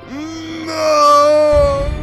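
A man's long drawn-out yell, joined about halfway by a higher, louder cry, over film music. A low rumble comes in near the end.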